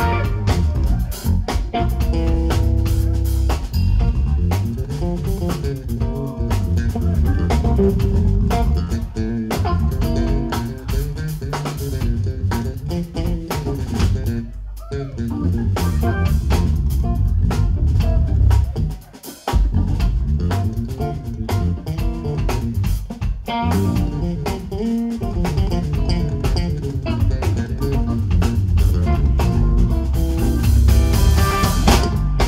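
Live electric bass guitar solo over a drum kit, with sliding, bending bass lines. The playing drops out briefly about nineteen seconds in, then resumes.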